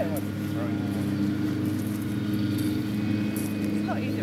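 A steady low hum with evenly spaced tones, like a motor running, under faint voices; a short laugh or word right at the start.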